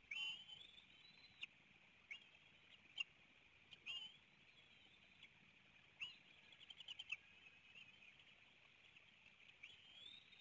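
Faint, high-pitched bald eagle calls: short rising chirps every second or two, and a quick chittering run about six and a half seconds in.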